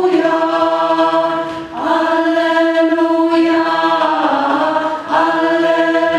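Large amateur choir singing sustained chords in a rehearsal, the notes held in long phrases with brief breaks about a second and a half in and again near the end.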